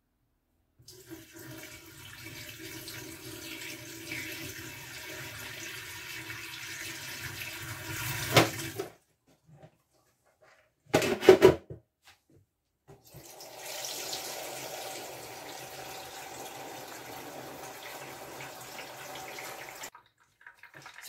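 Water at a stainless-steel kitchen sink: the filter jug's rinse water tipped out into the sink for several seconds, then a pause and a few sharp knocks about eleven seconds in, then the tap running steadily as the jug is refilled to flush the new filter cartridge.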